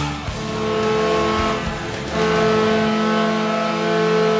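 The end of a rock song fades out, and a hockey arena goal horn, the New Jersey Devils' horn, blows one long steady note. It gets louder about two seconds in and holds.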